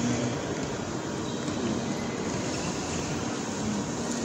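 Steady outdoor city ambience: an even hum of distant traffic with no single event standing out.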